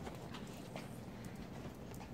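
Small dogs' claws clicking on a hard tile floor as they scamper and play: a quick run of scattered, irregular clicks.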